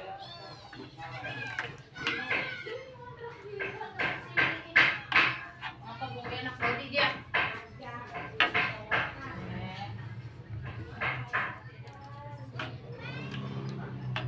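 Children's voices chattering and calling in the background over a low steady hum.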